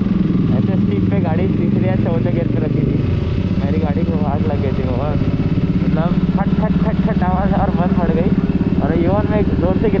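Suzuki Gixxer 155's single-cylinder engine running under way, heard from the rider's position. The engine note eases about three seconds in and pulls strongly again from about six seconds.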